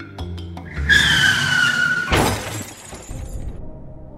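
Car tyres screeching with a slightly falling pitch for over a second, then a sudden crash about two seconds in that rings out for about a second, over background music.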